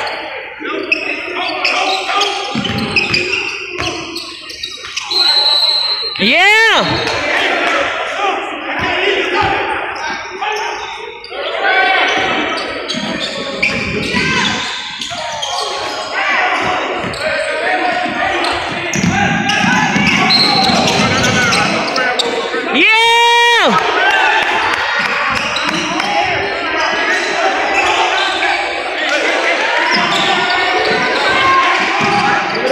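Basketball game sounds on a hardwood court: the ball being dribbled and sneakers squeaking sharply twice, under voices talking and calling out in an echoing gym.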